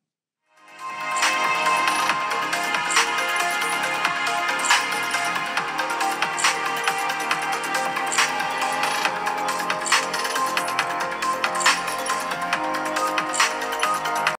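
Music with an electronic beat played at 100% volume through the iQOO 11 smartphone's loudspeakers, fading in after a brief silence. It has little deep bass and a strong hit about every second and three quarters.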